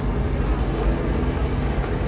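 Steady outdoor street background noise: an even low rumble of the kind made by traffic, with no distinct events.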